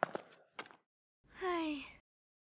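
A young girl's sigh, voiced and falling in pitch, starting about a second and a quarter in.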